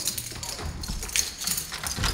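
A plastic food container being handled, giving a run of light, irregular clicks and knocks from its lid and body.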